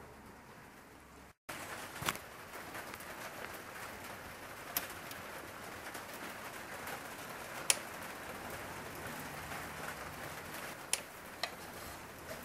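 Scattered sharp clicks and knocks from handling a studio monitor speaker and its strap on a stand, about six spread out over a steady background hiss.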